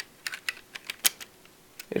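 Lego plastic bricks clicking as the loose back section of a brick-built tank, held on by only four studs, is handled and fitted back: a string of short, sharp clicks, the loudest about halfway through.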